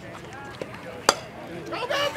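A softball bat strikes a pitched ball once, a single sharp crack about a second in. Spectators' voices rise near the end.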